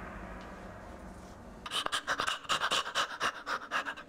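Rapid, rhythmic panting that starts a little under two seconds in, about five quick breaths a second, and cuts off abruptly at the end.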